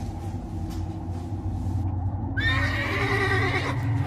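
A horse whinnies once, a high wavering call starting about two and a half seconds in, over a low steady hum.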